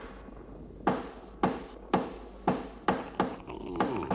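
A wooden trapdoor banging repeatedly, about two sharp knocks a second, each with a short ringing tail, as it is forced up from below.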